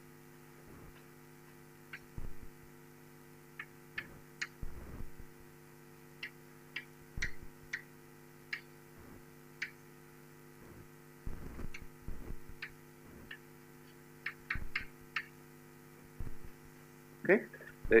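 Chalk on a blackboard in short, irregular taps and strokes as an equation is written, over a steady electrical hum.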